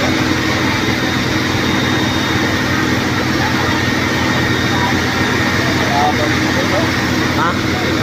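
Fire truck engine running at a steady hum with a constant pitch, the pump-driving engine at a fire scene, under the scattered chatter of a crowd.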